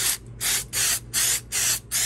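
Aerosol spray can of Krylon Stone coarse-texture paint hissing in short bursts, about three a second, as a light first coat goes onto slot car track.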